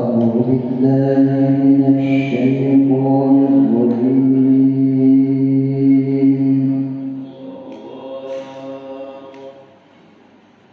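A man reciting the Qur'an in the melodic qiro'ah style into a microphone, drawing out long held notes with slow melodic turns. The voice is loud for about seven seconds, then continues more softly and stops shortly before the end.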